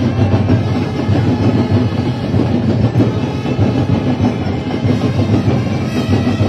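Loud Sinulog dance music driven by fast, relentless drumming, played continuously for the street ritual dance.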